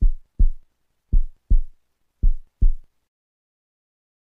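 Heartbeat sound: three lub-dub pairs of low thumps, about a second apart, which stop about three seconds in.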